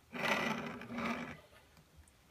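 Handling noise as a 3D-printed plastic part on its mounting assembly is picked up and moved close to the camera: a rustling scrape in two stretches lasting a little over a second in all.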